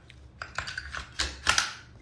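Metal and polymer parts of an IWI Uzi Pro clicking and clacking as the top cover is fitted back onto the frame during reassembly: a quick run of sharp clicks, the loudest two late in the run.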